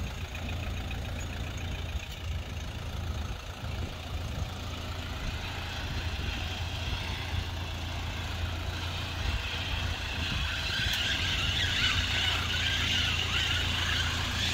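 Small hatchback's engine running at low speed while the car maneuvers slowly into a parking space, heard from outside the car as a steady low hum. A higher hiss grows louder in the second half.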